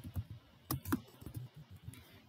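Typing on a computer keyboard: several separate keystrokes, unevenly spaced.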